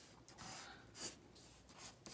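Faint pencil strokes scratching on a sheet of paper: a few short strokes of sketching.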